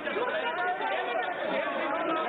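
Many voices talking over one another in a parliamentary chamber: a steady hubbub of members' chatter.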